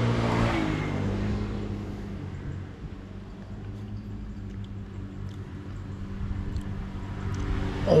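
Steady low hum of a motor vehicle engine running nearby, a little louder in the first two seconds and then settling lower. A brief hum of a man's voice, tasting food, opens it.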